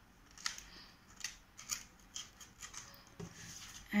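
Faint, scattered light clicks and rustles of hands handling a plastic carrying case and the paper booklets inside it.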